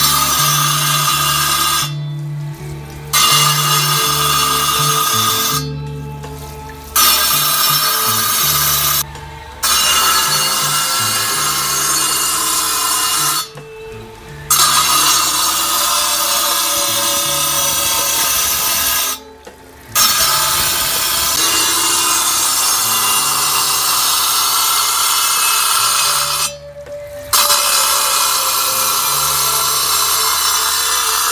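Glass being ground on a belt-driven cold-working wheel: a steady motor hum under a grinding hiss as the glass is held to the spinning wheel. The sound cuts off suddenly several times and comes back.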